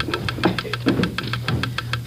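Geiger counter clicking rapidly and evenly, several clicks a second, over a low sustained music tone: the counter is picking up radioactive material close by.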